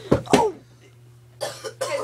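A person coughing twice in quick succession, followed by brief voice sounds about a second and a half in.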